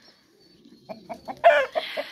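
A rooster gives a few short clucks starting about a second in, then one louder squawk that falls in pitch.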